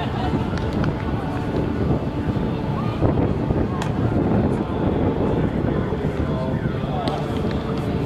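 Wind buffeting the microphone in a steady low rumble, with indistinct voices of a group of men under it.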